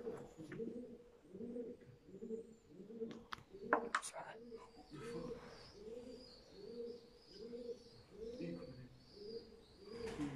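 Feral pigeons cooing, a steady, even run of low coos about two a second. A few sharp knocks or crunches come about three to four seconds in.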